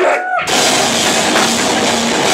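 Live hardcore band: after a brief break with a faint sliding pitched sound, drums, distorted guitars and bass come back in together about half a second in and play on, loud and dense.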